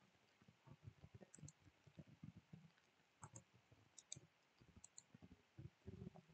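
Faint computer mouse clicks: four quick double clicks spread across a few seconds, over faint low knocks and desk noise.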